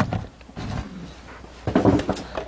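Cardboard pizza box being handled and paper napkins rustling, with a sharp knock right at the start. A brief voice-like hum comes near the end.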